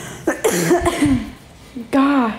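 A woman coughing: one hoarse, voiced cough lasting about a second, part of a cough she says she has had for weeks. A short voiced sound follows near the end.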